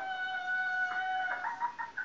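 A high, pitched call from a comedy clip played on a television, held steady for about a second and then breaking into a run of short, choppy notes, heard through the TV's speaker.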